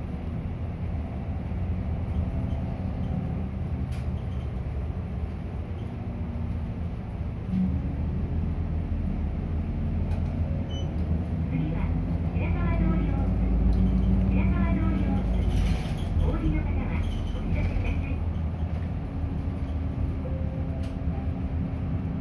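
Isuzu city bus engine running, heard inside the cabin as a steady low drone that grows louder for a few seconds around the middle. A voice speaks over it for several seconds about halfway through.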